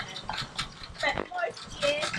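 A woman speaking into a microphone, in short phrases with brief pauses.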